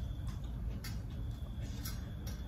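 Metal spoon clicking against a ceramic bowl of sauced fried tofu, twice, about a second apart, over a steady low hum.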